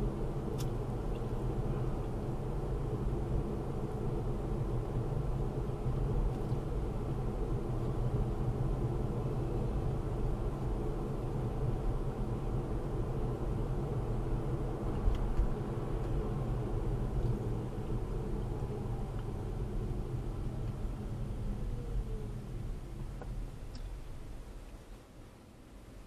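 Road and tyre noise of a Tesla electric car heard inside the cabin, cruising steadily. Near the end a faint whine falls in pitch and the noise dies away as the car slows almost to a stop.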